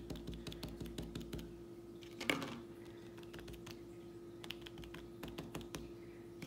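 Cotton swabs dabbing paint onto paper on a wooden table: many light, irregular taps, with one brief louder sound about two seconds in.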